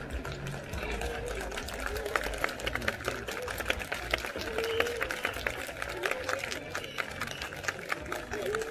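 Scattered hand claps from a street crowd, many sharp claps each second, with crowd chatter and voices; no band music is playing.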